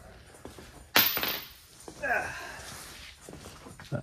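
A single sharp, loud clank about a second in, as of a hard metal part or tool struck or set down, ringing briefly as it dies away. Faint voices follow.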